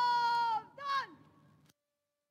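A woman's shouted parade drill command: one long, high, drawn-out call that drops in pitch at its end, followed by a short second call. The sound then cuts out abruptly.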